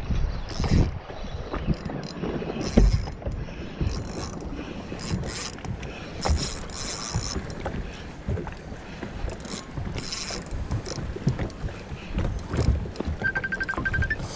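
Wind on the microphone and choppy water against a small boat's hull, with irregular clicks and rattles from a spinning rod and reel being handled.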